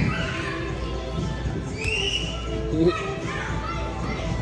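Children's voices in a busy gym, with a high squeal or shout about two seconds in, over background music.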